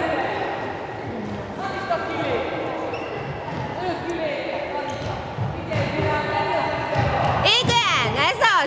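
Handball bouncing on a wooden sports-hall floor, with young players' voices calling and echoing in the large hall. Sharp, quickly rising and falling squeaks, typical of shoes on the court, start near the end.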